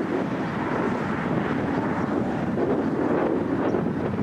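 Steady rushing wind on the microphone, with the drone of a distant Cessna 172 light aircraft on approach.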